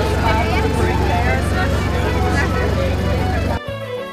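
Steady low engine drone under voices, with some music mixed in. About three and a half seconds in, it all cuts off abruptly and gives way to traditional folk music with fiddle and a beat.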